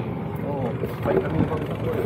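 Men talking in the background, over a steady low engine rumble.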